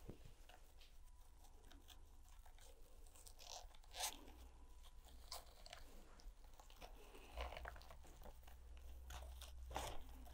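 Faint rustling and crunching of coarse twine being handled and knotted by hand, with a few sharp crackles as the knot is pulled tight, the loudest about four seconds in and just before the end.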